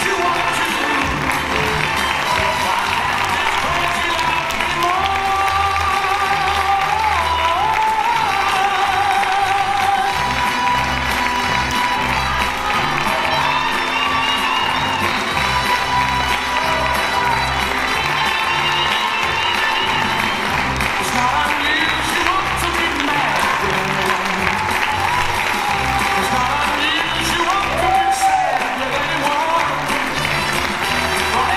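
Music with a steady beat and a melody, played over audience applause.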